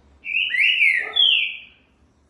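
Green-winged saltator (trinca-ferro) singing one loud whistled phrase of about a second and a half, in two parts: a note that dips and climbs again, then a higher note sliding down.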